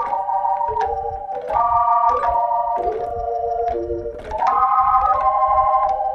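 Hammond B3 organ playing a melody harmonized in sustained block chords that step through inversions, roughly one chord change every half second to a second. Each new chord starts with a short click at the attack.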